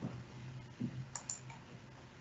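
Two quick, sharp clicks about a second in, typical of someone operating a computer, over a low steady hum, preceded by a couple of soft low thumps.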